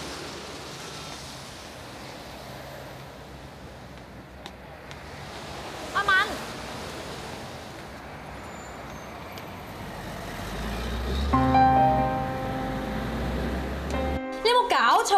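Steady street noise of rain and road traffic, with a low vehicle rumble building in the last few seconds as a bus passes. Background music comes in near the end.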